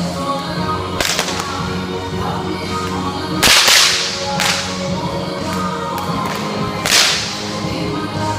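Six-foot bullwhips, worked two-handed, cracking sharply several times a few seconds apart over background music. The crack about three and a half seconds in is the loudest.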